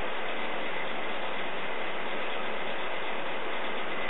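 A steady, even hiss of background noise that does not change, with nothing else standing out.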